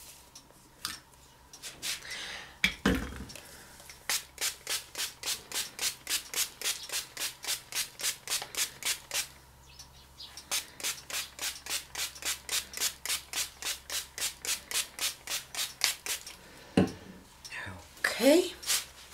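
Trigger spray bottle misting water onto a paper napkin. There are two long runs of quick squirts, about three a second, with a short pause between them.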